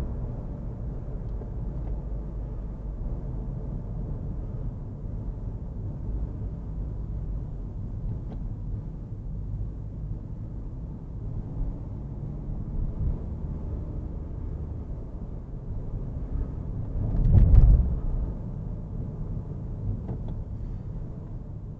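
Steady low road and engine rumble of a car driving in city traffic, heard from inside the cabin. Near the end the rumble swells louder for about a second.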